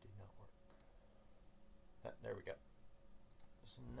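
A few faint sharp clicks and some low muttered speech over a faint steady hum.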